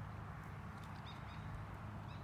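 Faint outdoor background: a steady low rumble with a few brief, faint high chirps about a second in and again near the end.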